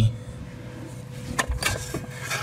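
Quiet handling noise: a single light knock about one and a half seconds in, then a few small clicks, over a faint steady hum.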